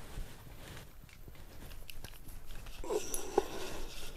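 Faint clicking and rustling from an ice fishing rod and spinning reel being worked to bring up a hooked walleye, with a few sharper ticks about three seconds in.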